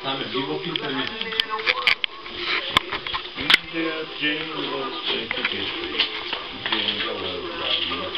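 Wrapping paper crinkling and tearing as a small gift is unwrapped by hand, with a few sharp crackles in the first half, under voices talking in the room.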